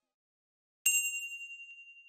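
A single bright bell ding, the notification-bell sound effect of an end-screen 'get notified' button, struck about a second in and ringing on as it fades.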